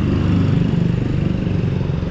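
Street traffic passing close by: motor scooter and car engines running, with a steady low engine note that shifts slightly in pitch.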